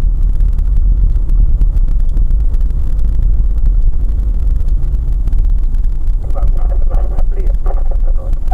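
Steady low rumble of a car driving on an unpaved road, picked up inside the cabin by a dashcam. A person starts talking about two seconds before the end.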